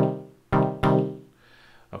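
Elektron Digitone FM synth playing one-finger minor dub chord stabs: short sawtooth chords through a resonant low-pass filter envelope with a little drive, each bright at the start and dying away quickly. The first is already sounding at the start and two more follow within the first second, then the sequence stops.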